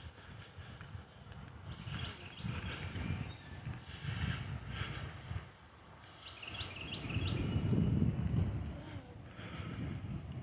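Wind buffeting the microphone: an uneven low rumble that comes and goes in gusts and swells strongest about seven to eight and a half seconds in.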